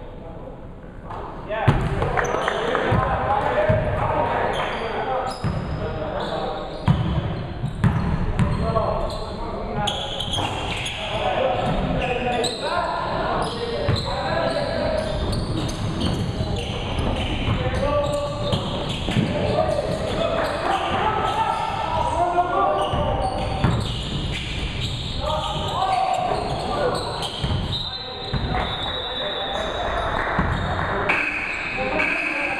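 Indoor basketball game in a large, echoing gym: the ball bouncing on the hardwood floor amid indistinct voices of players and spectators. It is hushed for about the first second and a half, then the voices and bouncing pick up as play resumes.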